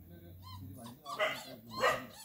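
A dog barking: two short barks close together in the second half.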